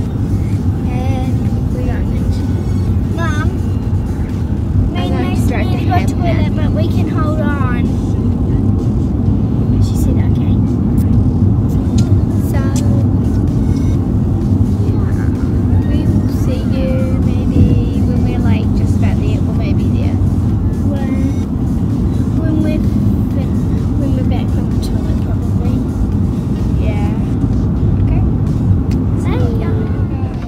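Steady road and engine rumble inside a moving car's cabin, with children's voices and music over it.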